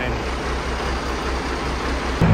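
A 1500-wheel-horsepower diesel semi truck's engine idling: a steady low rumble that pulses evenly, about eight times a second.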